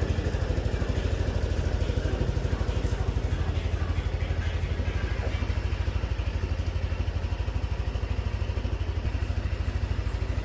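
Yamaha NMAX 125 scooter's single-cylinder engine idling steadily, a rapid even pulsing that does not change.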